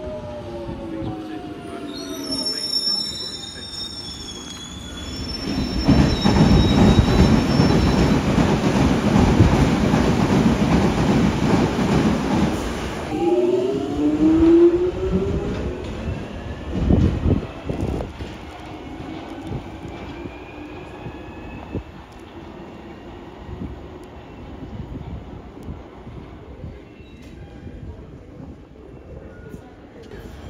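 London Underground Jubilee line 1996 Stock trains: a train runs past close by with a brief high wheel squeal and a loud rumble of wheels on rail. A train then pulls away, its traction motors whining and rising in pitch as it gathers speed.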